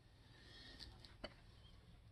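Near silence: faint room tone with two faint short clicks about a second apart.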